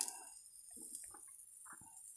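Mostly quiet, with a click at the start and a few faint, soft sounds of a spoon dabbing sauce onto ground-meat burrito filling.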